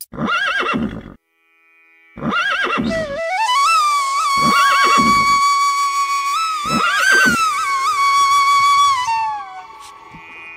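A horse whinnying four times, each call a short, shaky, arching neigh, over background flute music that holds one long steady note before falling away near the end.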